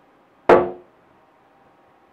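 A single drum stroke about half a second in, ringing briefly with a pitched tone before dying away.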